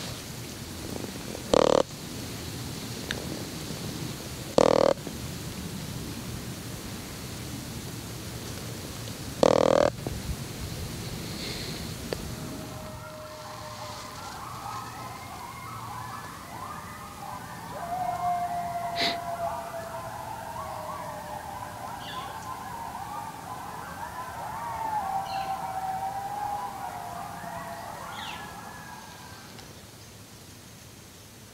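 Three short, loud bursts in the first ten seconds, then several overlapping, wavering calls that glide up and down in pitch, running from about thirteen seconds in until near the end.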